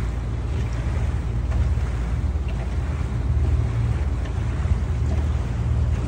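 Boat's engine running steadily in gear at moderate speed while the boat turns, a constant low rumble mixed with the rush of water along the hull and wind on the microphone.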